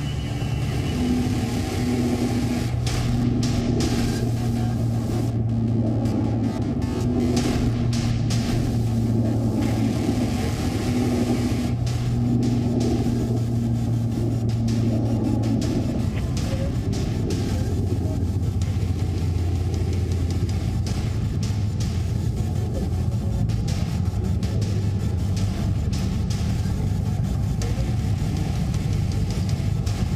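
Steady low drone of a military turboprop transport aircraft's engines, with wind rushing past. About sixteen seconds in, the drone drops to a lower pitch.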